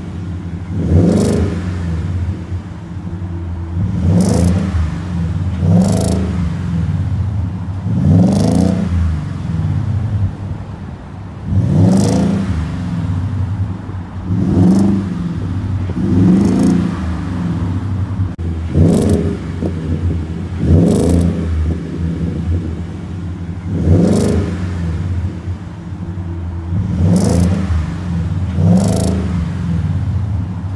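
2018 Ford F-150 engine revved over and over in short blips, each rising and dropping back to idle about every two to three seconds. It is heard through a custom true dual exhaust with Magnaflow large-case stainless mufflers and twin staggered tips.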